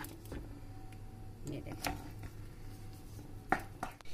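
Wooden spatula stirring and scraping a thick semolina (suji) upma mixture in a nonstick pan as it is cooked down until its water dries off, a few soft scrapes and knocks over a steady low hum.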